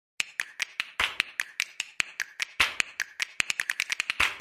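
A rapid run of sharp, snap-like clicks, about five a second and growing denser toward the end, from a produced intro sound effect as the logo animates in.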